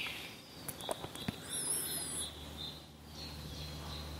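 Quiet background with a faint steady low hum, and a short burst of high, faint bird chirping in the middle.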